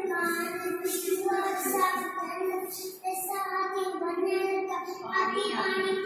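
Children singing a tune in long held phrases, each about a second or more, with short breaks between them.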